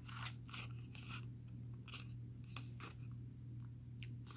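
Faint, irregular crackles and light taps of a small cardboard cosmetics box being handled close to the microphone.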